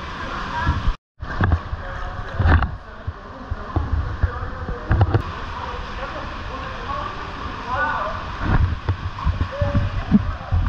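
Swimmers in wetsuits splashing through a canyon pool against the steady rush of a swollen river, with short indistinct voices now and then. The sound cuts out briefly about a second in.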